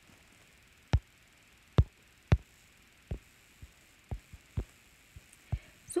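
About ten light taps on a tablet's glass touchscreen at irregular intervals, the loudest ones in the first half.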